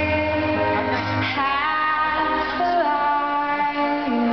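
A woman singing a slow piano ballad live, holding long notes that slide to a new pitch about every second and a half, over piano accompaniment amplified through an arena sound system.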